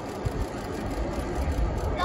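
Low rumble of a distant Atlas V rocket launch, its RD-180 main engine and solid rocket boosters, arriving from the pad and growing louder in the second half.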